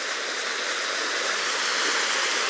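A woodland stream running full, gushing over a small rocky cascade: a steady rush of water that grows a little louder.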